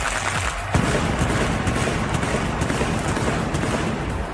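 Arena entrance pyrotechnics going off: a dense run of rapid crackling bangs bursts in about a second in and keeps going, over entrance music.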